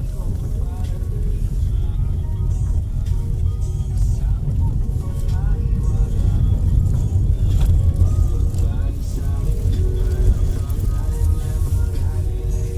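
Low, steady road and engine rumble inside a moving car's cabin, heard together with background music.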